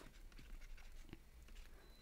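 Near silence: faint room tone with a couple of soft ticks from a stylus writing on a tablet.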